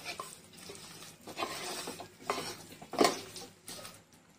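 Wooden spatula stirring and scraping thick chicken masala around a nonstick pot, in several short strokes, the loudest about three seconds in.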